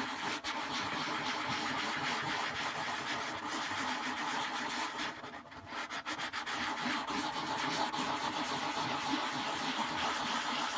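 A cloth rubbing boot polish into the cone of a 15-inch RCF bass speaker driver, a continuous scrubbing noise that pauses briefly about five seconds in.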